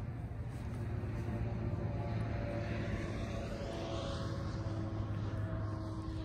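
A steady low engine drone that holds evenly throughout, with a few faint higher hums above it.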